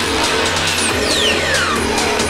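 Techno music from a vinyl DJ mix: a steady beat with deep bass and busy hi-hats, and a high tone sweeping down in pitch about halfway through.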